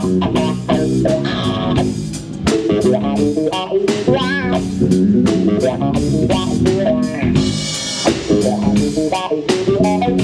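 A live rock band playing: an electric guitar picked over a bass guitar and drum kit.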